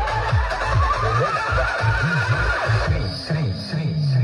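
Electronic dance music played loud through a large outdoor DJ speaker stack: repeated bass hits that drop in pitch under a slowly rising synth sweep, which thins out about three seconds in.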